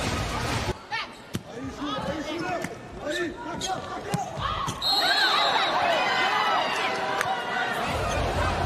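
Indoor volleyball rally: sharp slaps of the ball being served, dug and spiked, with shoe squeaks on the court floor. About five seconds in a short, high whistle sounds and the arena crowd cheers.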